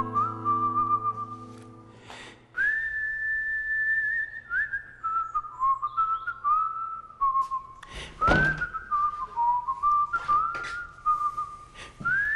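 A whistled tune: a single line of held notes that slide up and down between pitches, over a guitar chord ringing out in the first two seconds. A few short knocks sound under it, the strongest about eight seconds in.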